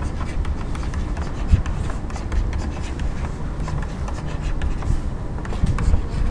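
Light scratching and scattered short clicks of someone drawing by hand, over a steady low hum of the room.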